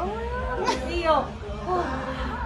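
A woman laughing and vocalising, her voice sliding up and down in pitch in high arching glides.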